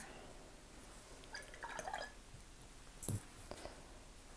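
Faint sounds of a watercolour brush being rinsed in a water jar between colours: light water dripping and sloshing, with a small knock about three seconds in.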